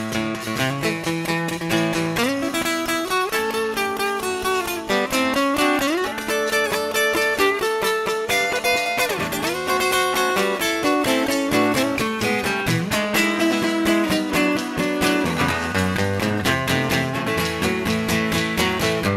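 Live acoustic band playing an instrumental break: strummed acoustic guitar, fiddle and pedal steel guitar over a scraped washboard beat. Several notes slide up and down in pitch.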